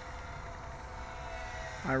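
Whine of a small home-built quadcopter's electric motors and propellers in flight at a distance, with its pitch shifting slightly upward as the throttle changes, over a low rumble.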